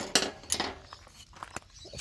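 A round chainsaw file clinking against metal as it is picked up and set against a chain cutter tooth: a handful of light, sharp clinks with a brief scrape near the start.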